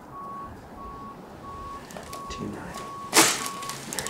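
Steady electronic beeping, one tone about one and a half beeps a second. A short, sharp burst of noise about three seconds in, the loudest sound here, comes as the chiropractor thrusts on the patient's mid-back.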